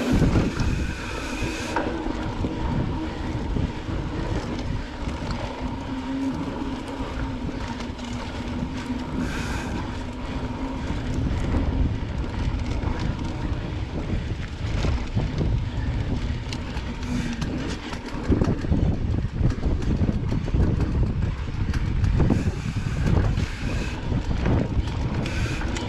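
Mountain bike ridden along a dirt singletrack trail: tyre rumble with frame and drivetrain rattle. A steady hum runs under it for most of the ride, and the rumble grows louder about eighteen seconds in.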